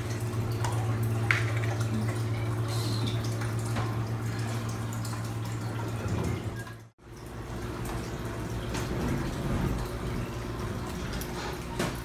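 Steady low hum with trickling, dripping water, like aquarium filters running, with a few faint clicks; the sound drops out briefly about seven seconds in, and the hum is weaker afterwards.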